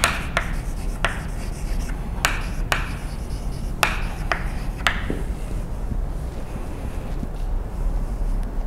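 Chalk tapping and scratching on a blackboard as a line is written, in a string of short strokes that stop about five seconds in, over a steady low hum.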